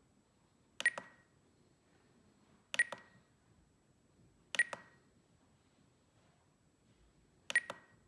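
Spektrum DX9 transmitter's roller wheel and menu keys pressed four times, each press a sharp double click with a short high beep, a few seconds apart.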